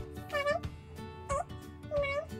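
Background music with a beat, overlaid by short pitched calls that dip and rise like a cat's meow, about once a second.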